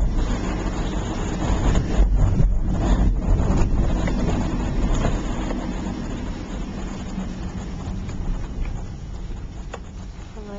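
Road and engine noise heard from inside a moving car on a wet road: a steady low rumble that fades over the second half.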